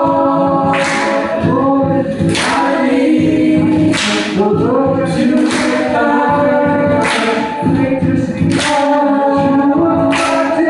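Music: several singing voices holding long notes in harmony, sliding between pitches, with a breathy swish about every second and a half.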